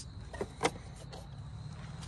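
Quiet background with a faint steady high tone and low hum, and a few soft clicks from the camera being handled as it moves.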